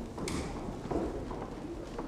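Footsteps of several people walking on a wooden church floor: irregular knocks and shuffles, with a short rustle about a quarter second in.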